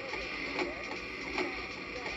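Electronic sound effect played through the small speaker of a VTech Thomas & Friends Learn & Explore Laptop toy: a steady machine-like whirring with a knock repeating about every 0.8 seconds.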